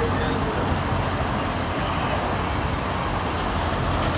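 Steady road traffic noise, an even rushing hum with no single vehicle standing out.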